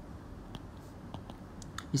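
A few light clicks, about four, of a stylus tapping a tablet screen while writing, over a low steady hiss.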